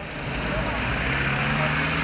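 Street noise from a motor vehicle running, a steady rushing sound with a low engine hum that comes in about halfway through.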